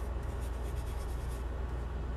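Drawing pencil scratching across sketch paper in quick, repeated shading strokes, over a steady low hum.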